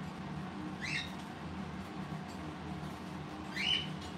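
Parrot giving two short, high chirps, one about a second in and one near the end, over a faint steady hum.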